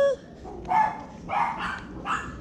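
A small dog barking twice in short, sharp barks, a little over half a second apart.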